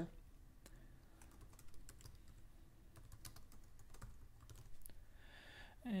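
Computer keyboard typing: a faint string of irregular key clicks as two words are typed into a code editor.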